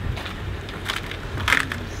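Crunching and rustling, loudest about one and a half seconds in, over the low steady rumble of an idling SUV engine.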